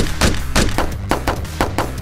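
A rapid, uneven volley of about ten pistol shots, the first the loudest, over background music.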